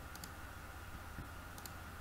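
Two faint computer mouse clicks, one just after the start and one about a second and a half in, over a low steady hum.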